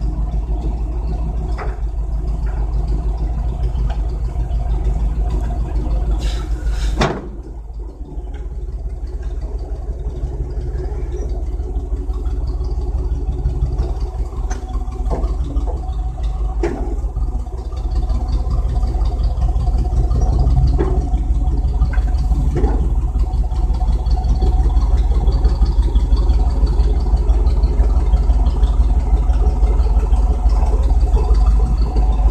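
A vehicle engine idling steadily with a low rumble, growing a little louder in the second half. A brief sharp noise cuts in about six to seven seconds in, with a few faint knocks later.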